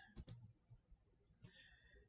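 Near silence, with a few faint clicks of a computer mouse about a quarter of a second in, switching the view to a slide.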